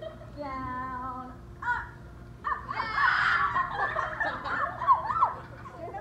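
Kids' and girls' voices shouting and squealing: one drawn-out held cry near the start, then a loud burst of many overlapping excited shrieks through the middle.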